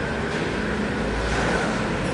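Steady background noise of street traffic, with a low engine rumble that swells about a second in.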